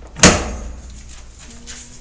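A single sharp clack about a quarter second in, dying away quickly: a metal padlock knocking against the garage door's latch as it is handled.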